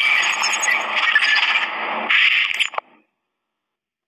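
Static-like glitch sound effect for a channel logo intro: a loud hiss of noise with crackle that starts suddenly, shifts about two seconds in and cuts off just under three seconds in.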